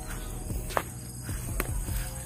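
Footsteps through long grass, with a couple of sharper crackles, over a steady high insect drone.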